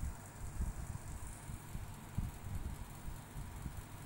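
Low, uneven background rumble with a faint steady hiss above it.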